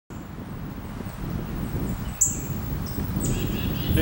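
Birds chirping in short, high, falling notes over a steady low rumble of outdoor ambience; the loudest chirp comes about two seconds in.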